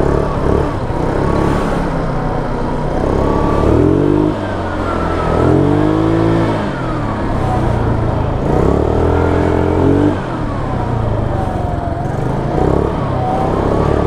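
Kymco Super 8 scooter engine revving up and easing off several times while riding, its pitch rising and falling with each throttle opening. It keeps running without stalling on throttle, its carburettor main and pilot jets freshly cleaned.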